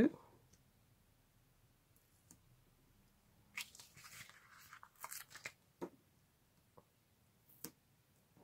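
Soft crackling and rustling of paper as adhesive foam pads are peeled off their backing sheet, in a cluster of short bursts around the middle, then a single light tick near the end.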